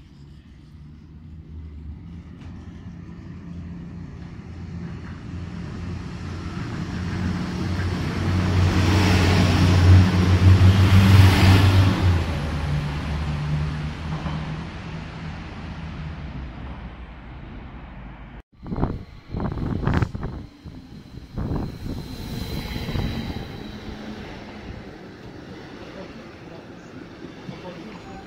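A train passing along a station platform: a low steady hum with rail noise that builds to a peak about ten seconds in and then fades. After an abrupt break, a few knocks and a faint high squeal.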